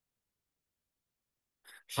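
Dead silence, as on a noise-suppressed call line, broken near the end by one short, faint breath just before speech resumes.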